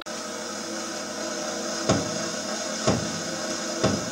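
Steady hiss of room noise with three sharp wooden knocks about a second apart.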